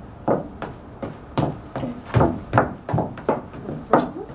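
Footsteps of flat shoes on wooden deck boards: a string of irregular knocks, about two a second, as she steps and turns.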